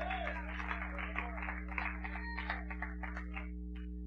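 Faint murmur of congregation voices responding during a pause in the sermon, over a steady low hum; the voices die away near the end.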